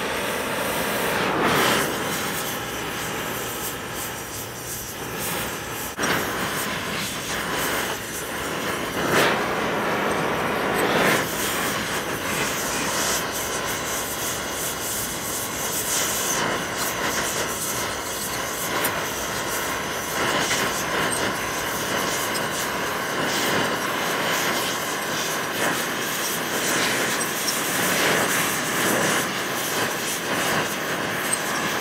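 Oxy-fuel torch flame hissing steadily and loudly as it heats a rusted cast-iron turbine housing flange to free a seized bolt.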